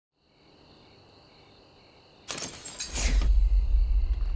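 Faint, steady chirring of night insects such as crickets. About two seconds in, a sudden rushing noise breaks in, and a deep low rumble swells up and holds, louder than everything else.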